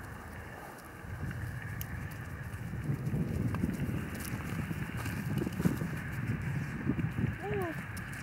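Soft, irregular footsteps and rustling on frozen, snow-patched grass, starting about a second in.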